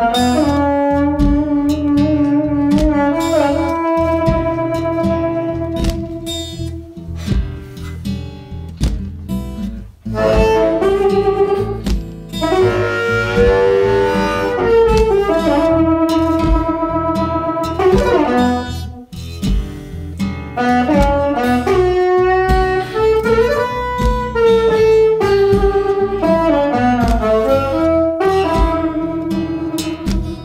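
Diatonic harmonica (a Seydel 1847 in A) played cupped against a handheld microphone, in second position for a song in E: long held notes with several bent up and down. Underneath runs an acoustic guitar and foot-stomp backing track.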